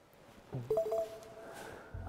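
A short electronic beep: two steady pitches that sound together for about half a second, starting about half a second in.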